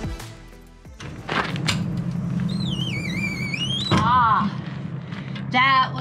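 Folding RV entry steps being swung up to stow: a wavering metal squeak, then a sharp thunk about four seconds in as they close. Music fades out at the start, and a voice begins near the end.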